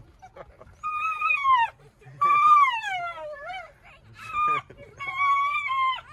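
Dog giving high-pitched, drawn-out whining cries of excitement: four of them, the second long and sliding down in pitch, the last held steady. These are greeting cries at the return of its owner.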